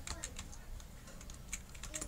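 Computer keyboard keys clicking in an irregular run of keystrokes.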